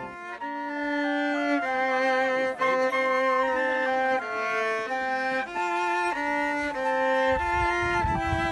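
Violin playing a slow melody in held notes that step from one pitch to the next, with a flute alongside. A low rumble comes in near the end.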